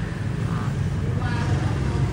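Steady low background rumble, like engines or traffic, with a brief voice a little past a second in.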